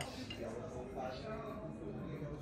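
Faint background voices of other people talking in a restaurant dining room.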